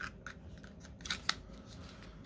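A ShivWorks Clinch Pick fixed-blade knife being handled and seated in its hard black sheath on the belt, giving a few sharp clicks. The loudest clicks come in a quick cluster about a second in.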